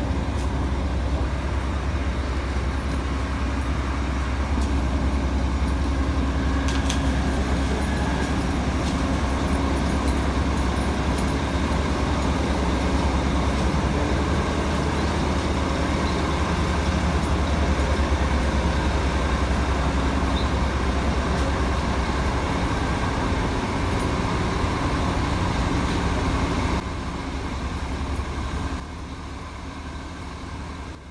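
Steady low engine rumble from heavy trucks, dropping in level in two steps near the end.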